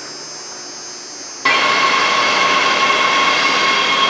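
Los Angeles Metro subway train at an underground platform: loud, even rail noise with steady high-pitched whining tones, starting abruptly about a second and a half in. Before that, only a low electrical hum.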